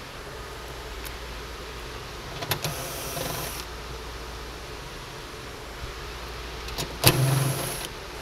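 Cordless driver running in two short bursts of about a second each, one around two and a half seconds in and a louder one near the end that starts with a sharp click, as it backs out the 10 mm bolts holding the hatch's centre trim.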